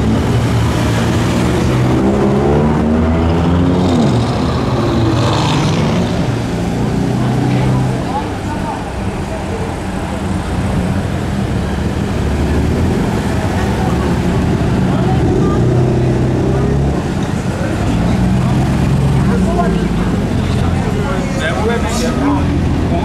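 A BMW M4's twin-turbo straight-six accelerating away from a slow corner, its revs climbing over the first few seconds. Later a Mercedes-Benz C63 AMG's V8 rumbles at low speed as the car rolls past.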